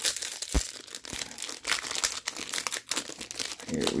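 Plastic wrapper of a Topps baseball card pack crinkling steadily as it is handled and torn open.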